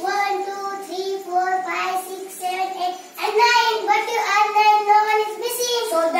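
Children singing a slow tune with long held notes, with a short break about three seconds in.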